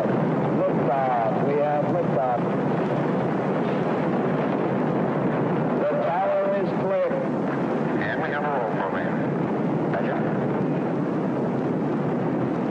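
Saturn V rocket engines at liftoff, a steady, dense roar in an old archival recording, with short phrases of a launch commentator's voice over it.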